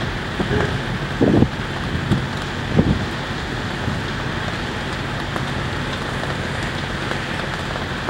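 Steady wind rushing on the microphone with a faint low hum beneath it, and a few low buffets in the first three seconds.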